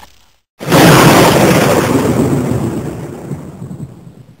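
Thunder-crash sound effect: a loud crash that starts suddenly about half a second in and rumbles away, fading over the next three to four seconds.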